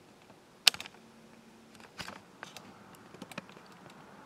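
A few light clicks and taps: one sharp click under a second in, then scattered softer ones.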